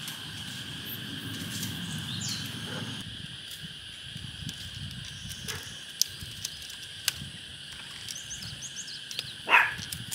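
Steady high-pitched insect drone with a few small bird chirps. In the second half there are a couple of sharp clicks, and near the end a louder scrape, from a knife working a bamboo strip.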